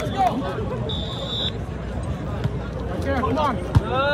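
Crowd chatter around an outdoor volleyball court, with a short steady high whistle blast about a second in. Near the end, a single sharp smack of a hand hitting the volleyball, the loudest sound, as players shout.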